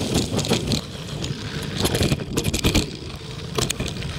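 Mountain bike rolling over a dirt trail strewn with dry leaves: a steady rumble of knobby tyres on the ground, broken by frequent quick rattles and clicks from the bike over the bumps.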